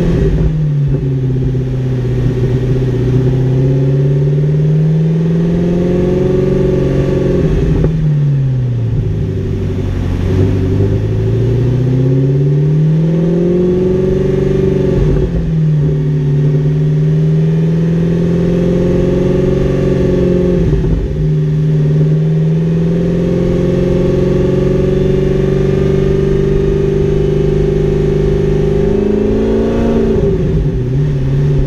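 Audi R8's V10 engine running at a standstill, its pitch drifting slowly down and back up several times rather than holding a steady idle, with a few brief breaks.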